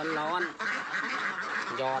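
A flock of white domestic ducks quacking continuously, a dense overlapping chatter with no pauses.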